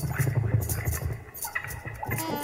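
Band music: a full low bass sound under crisp, repeated high percussion hits, briefly softer about a second and a half in.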